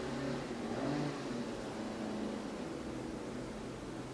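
Steady low background hum of room noise, with faint wavering low tones and no distinct events.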